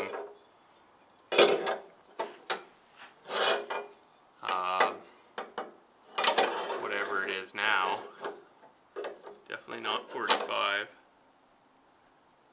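A few sharp clicks and light scrapes of a metal square being set against a steel pipe rail, between stretches of low muttering.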